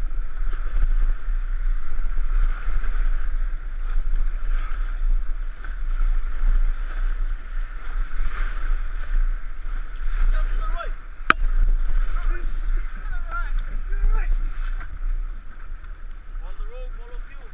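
River water rushing and splashing around an inflatable raft as it is paddled through small rapids, with a low wind rumble on the microphone. A single sharp click comes about eleven seconds in.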